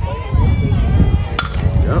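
A single sharp crack of a softball bat striking the pitched ball about a second and a half in, with spectators' voices around it.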